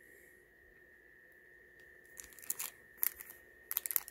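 Clear plastic pin bags crinkling in the hand as they are handled, a scatter of short crackles starting about halfway through.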